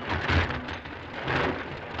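Cartoon sound effects of roller coaster cars rushing and rattling down wooden tracks, a dense rumbling noise that surges loudly twice.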